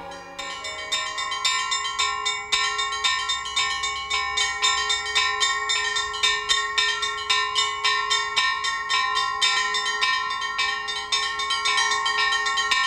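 Church bells in a small belfry rung in a rapid, continuous peal, about four strikes a second, their ringing tones sustained beneath the strikes.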